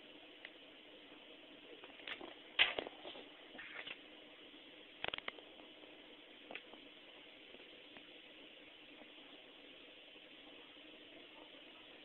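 Steady faint background hiss with a few short clicks and knocks: a cluster about two to four seconds in, another about five seconds in, and a small one a little later.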